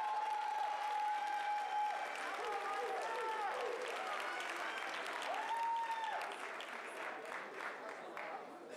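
Applause from an audience and from contestants on stage, with long high whoops and shouts from voices in the crowd. It dies away near the end.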